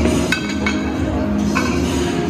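Three short metallic clinks that ring briefly, from a loaded barbell's plates and sleeve being handled, over loud background music with a steady beat.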